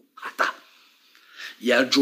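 A man's voice: two short breathy, hissing sounds, a pause of about a second, then a loud emphatic vocal exclamation starting near the end.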